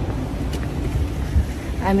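Wind buffeting a handheld camera's microphone outdoors: a steady low rumble with a rushing hiss. A woman starts speaking near the end.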